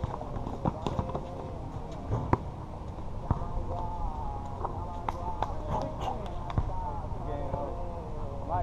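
Basketball bouncing on a hard court: irregular sharp thumps of dribbling, mostly in the first few seconds. Players' indistinct voices call out in the second half.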